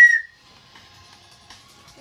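A high whistle-like tone, rising slightly in pitch, that fades out right at the start, followed by a faint background with thin, steady high tones.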